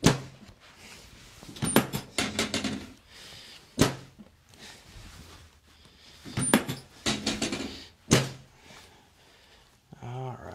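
Chiropractic drop table at work under lower-back and hip adjustments: bursts of mechanical clicks as the drop section is set, and sharp single clunks as it gives way under the thrust, the clearest about four and eight seconds in.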